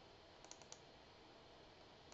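Near silence with four faint computer mouse clicks in quick succession about half a second in.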